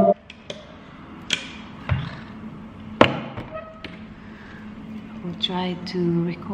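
A loud, steady, many-toned drone from the loop and effects setup cuts off abruptly at the start. Then come scattered sharp clicks and knocks as the effects pedals and handheld microphone are handled, with a brief voice sound near the end.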